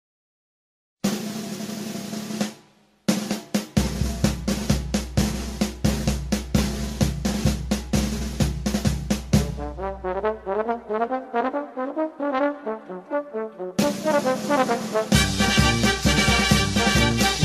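Brass band music with snare drum. After a second of silence a sustained brass chord sounds and fades. A long stretch of rapid drumming follows, then a stepping brass melody, and the full band comes in near the end.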